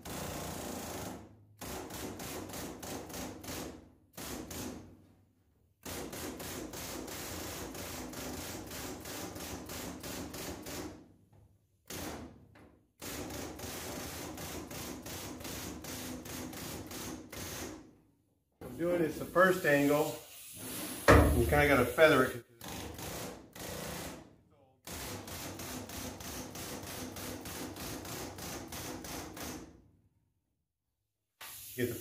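Long-stroke air hammer with a panel-flanging head beating along the edge of a sheet-metal bed panel, folding it over. It runs in bursts of rapid hammering, a few seconds each, stopping and starting about eight times. About two-thirds through there is a louder few seconds of a wavering pitched sound.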